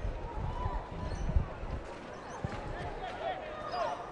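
Pitch-side sound of a football match: players' faint distant calls over a low ambient rumble, with a few dull thuds of the ball being kicked, the clearest about a second and a half in.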